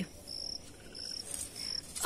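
A cricket chirping steadily, a short high chirp repeated about twice a second.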